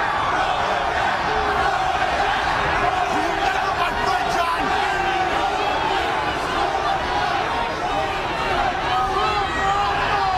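Large arena crowd cheering and shouting: a steady din of many voices at once.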